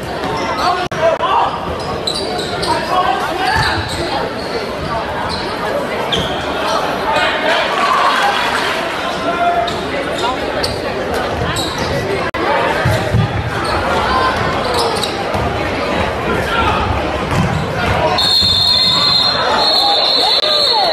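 A basketball bouncing on a hardwood gym court amid the voices of players and spectators, echoing in a large gymnasium. A steady high tone sounds near the end.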